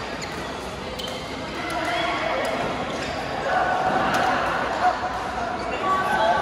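Badminton hall ambience: many overlapping voices echoing in a large hall, with scattered sharp clicks of rackets hitting shuttlecocks on the courts.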